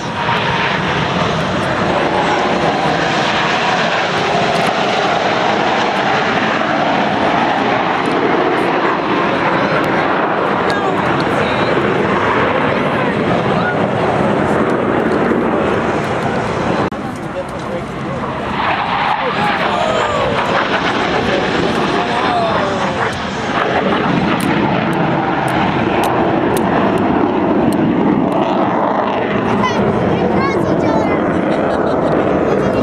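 Blue Angels F/A-18 Hornet jets flying past, a loud, steady roar that drops off briefly about seventeen seconds in and then returns, with the pitch sliding a few seconds later.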